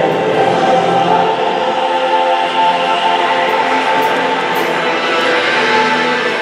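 A choir singing slow, sustained chords.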